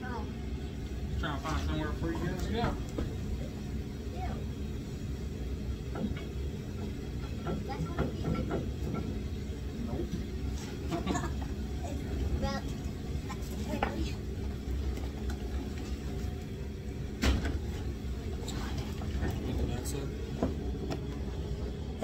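Quiet, intermittent voices over a steady low hum, with a few light knocks.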